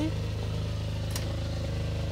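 ITC 7800 diesel generator engine running steadily with an even low pulse, supplying the 230 V that the inverter-charger runs on. A single short click about a second in.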